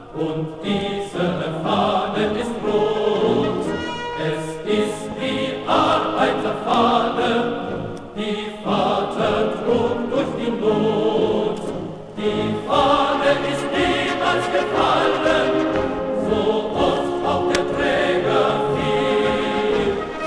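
A choir singing a German soldiers' marching song, in sung phrases with short breaks about 8 and 12 seconds in.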